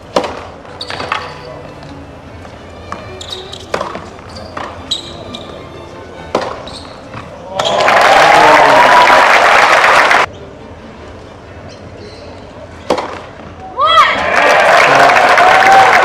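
Tennis rally: scattered racquet strikes and ball bounces on the court. Then a stadium crowd applauding and cheering after a point, twice: loudly for about two and a half seconds from around eight seconds in, and again from about fourteen seconds in.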